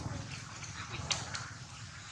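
Long-tailed macaques giving two short, sharp calls about a second in, over a steady low outdoor rumble.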